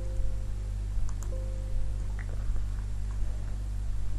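A steady low electrical hum, with a few faint clicks and two brief faint held tones early on.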